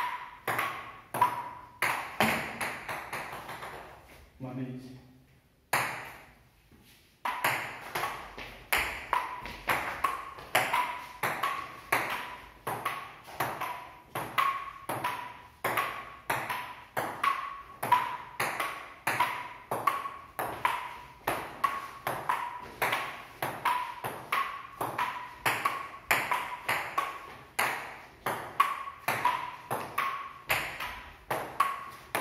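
Table tennis rally: a celluloid ball bouncing on a wooden table and struck by rubber-faced paddles, giving sharp pings at about two to three a second. There is a lull of about three seconds near the start, then a fast, steady rally picks up again.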